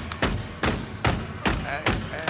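Start of a hip-hop backing track: a punchy drum beat hitting about twice a second, with a brief vocal fragment near the end.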